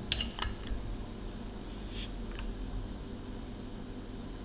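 Bottle opener working the metal crown cap off a glass beer bottle: a few light metal clicks, then a short hiss of escaping gas about two seconds in.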